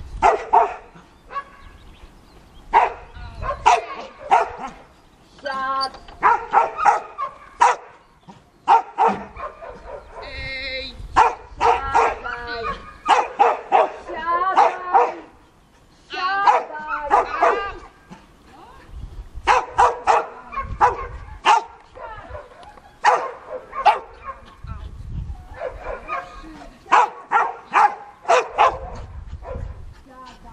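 A dog barking repeatedly in quick bursts of several barks, with short pauses between the bursts.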